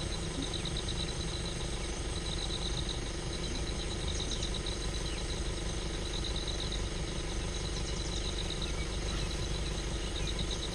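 Steady low hum of a safari jeep's idling engine, with short, high, pulsed chirping trills repeating about once a second.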